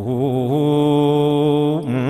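A man's voice chanting an Islamic devotional poem, holding one long, wavering note with vibrato. The note breaks off briefly near the end as the next line begins.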